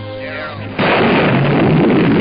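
Nuclear bomb explosion sound starting suddenly just under a second in and going on as a loud, sustained rumble.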